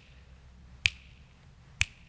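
Two sharp, short clicks about a second apart in a quiet pause, part of an evenly spaced series of about one click a second.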